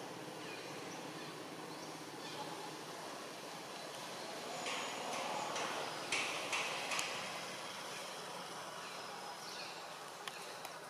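Outdoor ambience: a steady background hiss with faint high chirps. About five seconds in there is a brief stretch of rustling with three sharp clicks.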